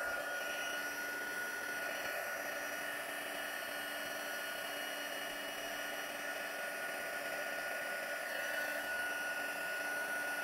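Craft heat tool (embossing heat gun) blowing steadily, a constant rush of air with a faint steady whine, as it melts gold embossing powder on black cardstock.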